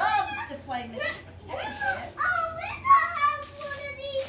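A small child's voice, chattering and exclaiming in high-pitched sounds without clear words.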